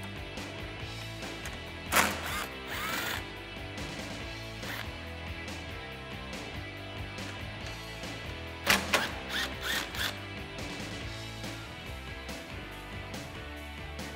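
Cordless screwdriver with an 8 mm socket running in short bursts as it backs out the screws at the bottom corners of a truck's grille, once about two seconds in and again in a cluster near nine seconds, over a steady background music bed.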